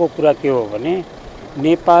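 A man speaking Nepali into reporters' microphones, with a brief pause just after a second in before he goes on.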